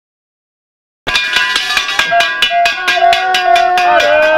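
Race spectators ringing cowbells in a fast, even rhythm and shouting long cheers that drop in pitch at the end. It starts abruptly about a second in.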